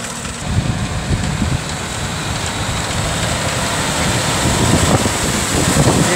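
John Deere 6215R tractor running steadily while pulling a tined cultivator through the soil, getting gradually louder as it draws close.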